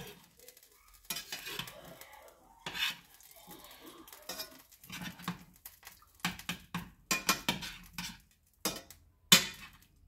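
A metal spoon clinking and scraping against a stainless steel frying pan while stirring chicken in curry sauce. The clinks come irregularly, with a run of quick ones past the middle and the sharpest one near the end.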